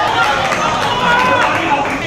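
Several voices calling out over one another on a football pitch.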